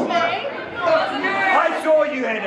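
Speech only: voices talking over one another.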